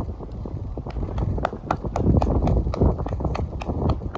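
Hoofbeats of a horse trotting on sand arena footing, an even beat of about four strikes a second, louder in the middle as the horse turns close by, over a low rumble.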